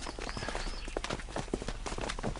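A rapid, irregular series of clicks and knocks.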